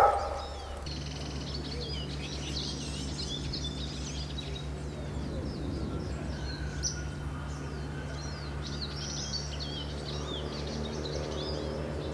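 A chorus of small birds chirping and trilling, many short high calls overlapping, over a steady low hum.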